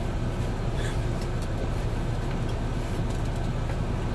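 Steady low rumble of an idling vehicle heard from inside a truck cab, with a couple of faint handling ticks about a second in.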